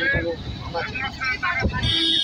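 Indistinct voices talking over the low rumble and wind noise of a moving vehicle in street traffic. Near the end a steady, high-pitched tone starts up.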